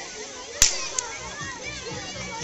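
A sharp crack of a race starting signal about half a second in, followed by a fainter second crack, sending children off on a sprint. Children's voices sound faintly behind it.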